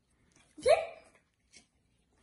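A child says one short word, a single syllable with rising pitch; otherwise near silence.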